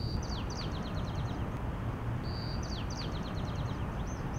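A songbird singing two similar phrases, each a clear held whistle followed by a quick run of falling notes, over a steady low outdoor rumble.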